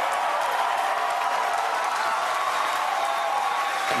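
A crowd cheering and applauding, a steady wash of many voices and clapping with no single voice standing out.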